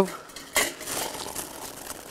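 Light clatter and rustle of burning fatwood shavings being put into a stainless-steel Solo Stove, starting suddenly about half a second in and fading to a faint rustle.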